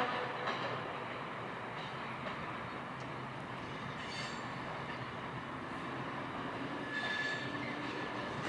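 Passenger coaches rolling slowly through yard tracks with a steady rumble. A brief high wheel squeal comes about seven seconds in.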